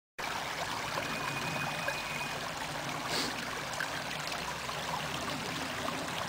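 Shallow rocky stream running over stones: a steady wash of flowing water.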